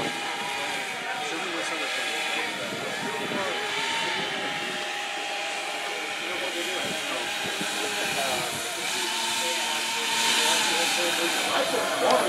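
Electric ducted fans of a large RC model UPS three-engine airliner whining as it taxis, the pitch wavering up and down with the throttle over a steady rush of air. The hiss of the fans swells about ten seconds in.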